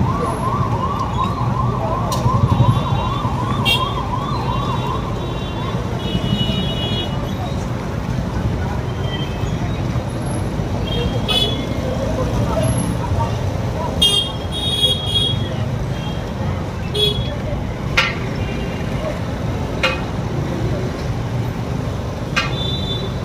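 A police vehicle's siren in a fast repeating yelp for the first five seconds or so, over steady street traffic and crowd noise. Scattered short high chirps and a few sharp clicks follow.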